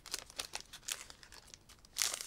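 Foil wrapper of a Pokémon booster pack crinkling as it is handled and pulled open: a run of quick, light crackles that thin out toward the end.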